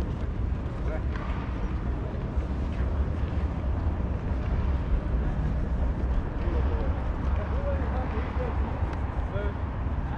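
City street ambience: a steady low rumble with faint voices of passers-by in the background, clearest past the middle.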